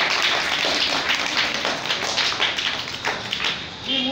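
A small audience clapping, a dense patter of hand claps that thins out and dies away about three and a half seconds in.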